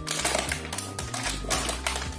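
Plastic toy packaging crinkling and crackling in quick irregular clicks as it is unwrapped by hand, over steady background music.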